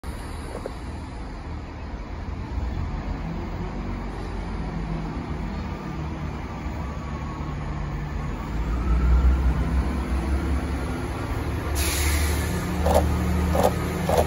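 A GWR Class 166 Networker Turbo diesel multiple unit pulls into the platform: a low diesel engine rumble that grows louder as it nears, with a faint rising whine. About twelve seconds in comes a sudden hiss, then a quick run of short knocks near the end.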